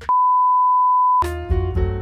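A single steady electronic beep, one pure tone lasting about a second, cut off abruptly as piano music starts.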